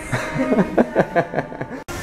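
A man laughing in short, rapid bursts, which break off abruptly near the end.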